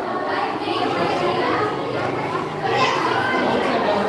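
Many children talking and calling out at once, a steady babble of overlapping young voices with no one voice standing out.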